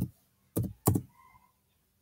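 Three keystrokes on a computer keyboard as a word is typed: one at the start, then two in quick succession about half a second later.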